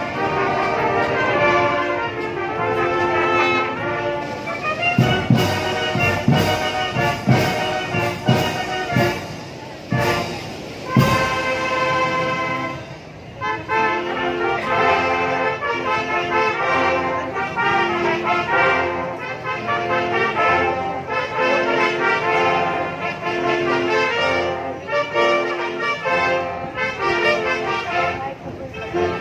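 Youth marching band playing, with trumpets and trombones holding chords over the drum line. A run of loud percussion strikes comes about five to eleven seconds in, and there is a brief drop in the music a little before the halfway point.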